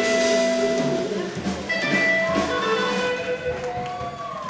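Live blues band music with held notes. It grows gradually quieter, as at the close of a song.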